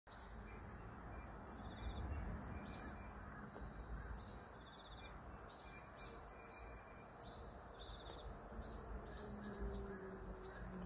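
Rural outdoor ambience: short high chirps repeat every second or so over a steady high hiss of insects.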